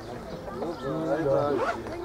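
Chatter of several voices overlapping, with one voice rising and falling more loudly through the middle.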